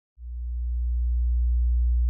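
A deep, steady sub-bass tone that swells in just after the start and then holds at one pitch.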